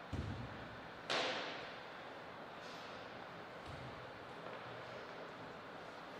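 A low thump at the start, then a louder, sharp knock about a second in that rings off briefly, and another low thump past the middle, over steady hall hiss.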